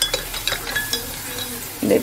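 Metal spoon stirring sweetened instant coffee in a ceramic mug, clinking quickly and repeatedly against the sides, each clink ringing briefly.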